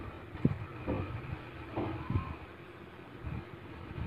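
Steady low background hum, with a few brief, faint murmured vocal sounds and a small knock about half a second in.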